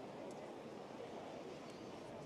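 Faint, steady outdoor ambience at a harness-racing track during the mobile start: an even low hiss with a few faint short chirps and no single sound standing out.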